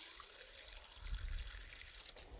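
Water from a garden hose pouring and trickling steadily into a planter's soil, faint and even.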